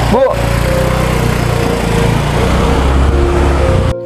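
Motor scooter engine running steadily close by, cutting off abruptly just before the end.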